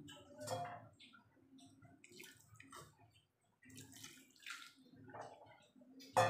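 Faint, irregular bubbling of mutton curry gravy simmering in an open pot.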